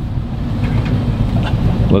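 Jet boat engine running steadily under way, a low drone with rushing wind and water, heard from inside the boat's cabin.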